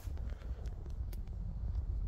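Quiet background: a steady low rumble with a few faint ticks, with no distinct source.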